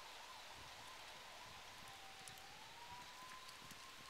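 Near silence: faint outdoor hiss with a thin, faint high tone that wavers slowly and rises a little in pitch just past halfway.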